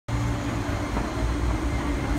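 MTR East Rail Line MLR electric multiple-unit train at the platform: a steady low rumble with a constant hum.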